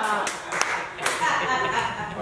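Three sharp hand claps in the first second, followed by a voice.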